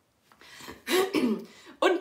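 A woman clearing her throat once, about a second in, before she starts speaking again.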